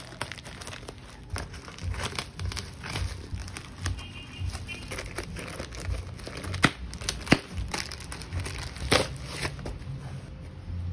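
Plastic bubble-wrap packaging crinkling and rustling as it is handled and cut open with scissors, with two sharp clicks about two-thirds of the way in.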